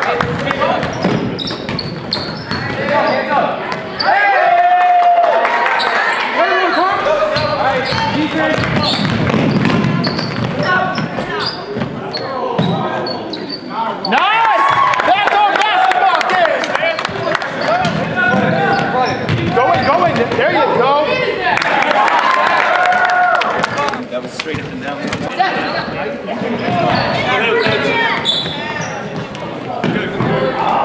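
A basketball bouncing and being dribbled on a hardwood gym floor during a game, with players' and spectators' voices echoing in the hall.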